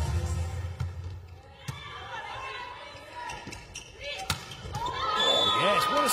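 Volleyball rally in an indoor arena: several sharp smacks of the ball being served, passed and hit, then crowd cheering and shouting swells from about five seconds in as the point is won.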